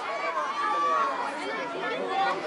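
Spectators' chatter: a babble of overlapping voices, some calling out, none standing clear of the rest.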